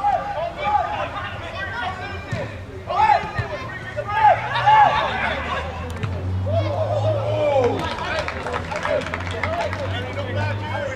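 Several voices calling and shouting at once, football players and spectators around the pitch, over a general crowd chatter. A low steady hum sits underneath and grows stronger from about six seconds in.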